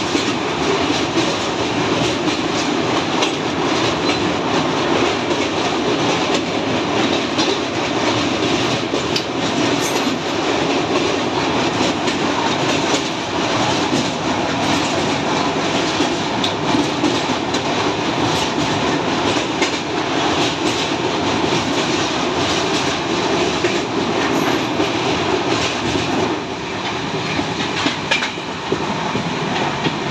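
Express passenger train running over a steel truss bridge: a loud, steady rumble of wheels on rail with fast clicking. It grows a little quieter near the end.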